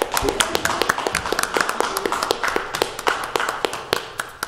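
A small group of people clapping: scattered, individually distinct claps from a handful of hands rather than a full applause, with voices underneath.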